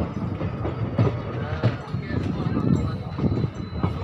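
Passenger train coach running on the track, with a steady rumble underneath and a few irregular sharp clacks as its wheels cross rail joints and points.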